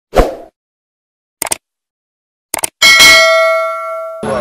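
Subscribe-button animation sound effect: a short pop, two quick double clicks like a mouse, then a loud bell ding that rings out for over a second before cutting off.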